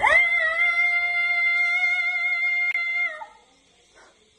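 A woman's voice slides quickly up and holds a high F5 on an open vowel for about three seconds, then stops.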